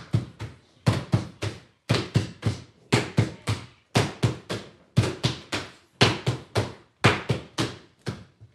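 Wooden hand paddles beating cloth laid on a wooden table, in the old way of beating linen. The strikes come in quick groups of three, about once a second, a steady working rhythm.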